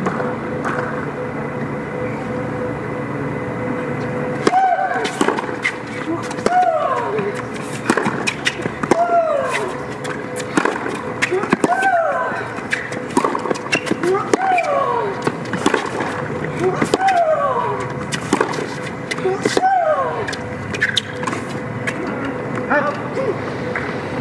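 A tennis rally on a hard court: sharp racket-on-ball hits about every second or so, most of them followed by a player's short grunt that falls in pitch. The hits and grunts start about four and a half seconds in and stop around twenty seconds.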